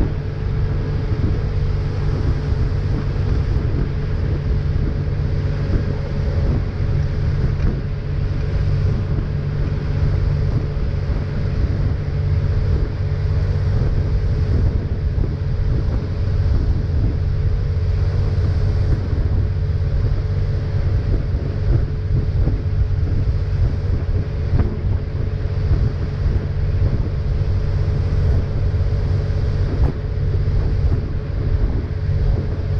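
Tow boat's engine running steadily at speed, over the rush of its wake and wind on the microphone.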